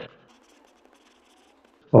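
Faint scratching of a stylus writing on a tablet surface, in a short run of strokes between spoken words.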